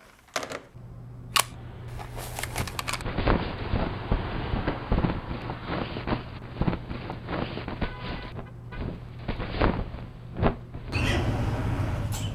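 A person moving about a room and handling things, making irregular clicks, knocks and rustles over a steady low hum.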